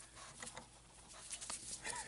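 Small dog whimpering faintly in a few short whines, begging for food.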